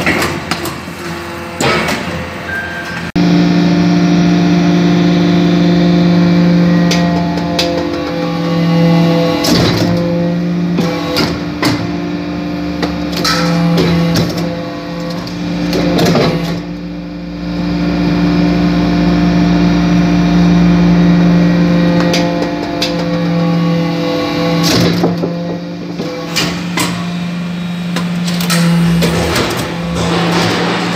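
Hydraulic chip briquetting press running: a steady pump hum with overtones starts abruptly about three seconds in and breaks off briefly several times as the press cycles, with scattered sharp knocks and clatter from the machine and the chips.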